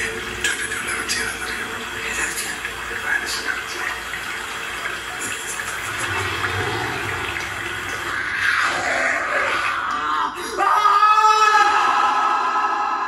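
Malayalam film trailer soundtrack: a line of dialogue over a dense rushing noise bed, a swelling whoosh around eight seconds in, then a sudden loud sustained tone from about ten and a half seconds in.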